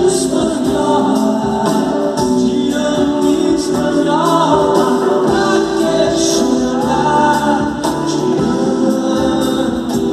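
Live band playing an electro-acoustic pop-rock song: acoustic guitars, bass, keyboard and drums, with singing over it.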